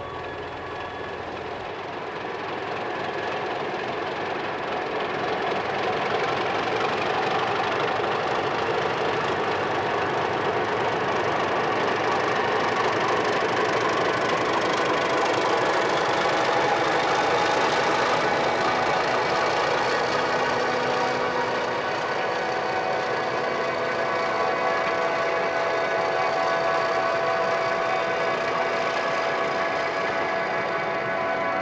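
A dense, steady wash of noise with held tones, a sound-effects passage of the recording with no singing, like a train or machine running. It swells over the first few seconds, and a faint high tone rises slowly through the middle.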